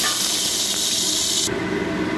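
Whole spices sizzling in hot mustard oil in an aluminium pressure cooker, a dense steady hiss. The bright top of the sizzle drops away suddenly near the end, leaving a softer sizzle.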